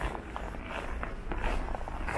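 Footsteps crunching on snow, about two steps a second.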